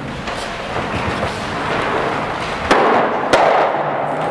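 A church congregation moving from standing to kneeling at wooden pews: a steady rustle and shuffle of people and clothing, with two sharp knocks near the end as kneelers go down.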